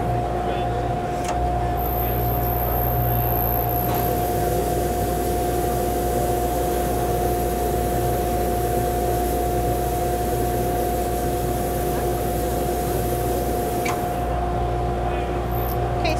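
Sandblasting in a Rayzist 2034 VXA sandcarving cabinet: the blast nozzle hisses with compressed air and abrasive as it etches a masked wine glass. The hiss starts about a second and a half in and stops around fourteen seconds, over a steady machine hum.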